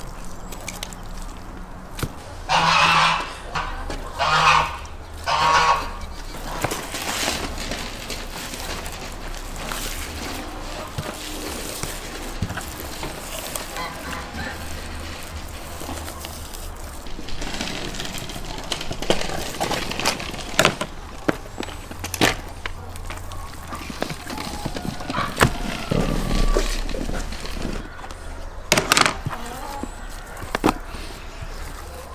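A goose honking three times in quick succession a few seconds in, the loudest sound here. Around it come scattered sharp clicks and rustling as raw lamb is cut with a knife and pulled apart on a wooden board.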